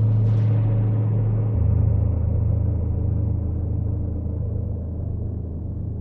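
Dark ambient drone made from an electronically processed gong: a low, sustained tone with overtones stacked above it. A second, lower tone joins about a second and a half in, while the high shimmer at the start dies away and the whole slowly fades.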